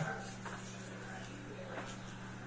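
Faint steady low electrical hum over quiet room tone; no music is playing.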